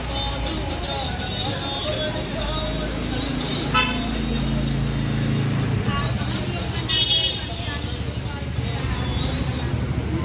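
Busy street traffic: vehicle engines running under the chatter of passers-by, with a short car horn toot about seven seconds in.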